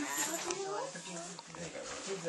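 Quiet, indistinct talk from a few people in a small room, with no clear words.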